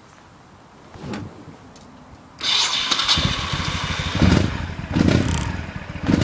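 Honda Shadow Aero 1100's V-twin engine being started: it cranks and catches suddenly about two and a half seconds in, then runs with two blips of the throttle.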